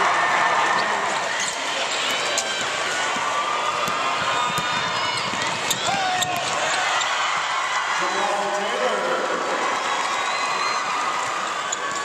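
Basketball game sound on a hardwood court: the ball bouncing and players moving, over steady arena crowd noise with voices.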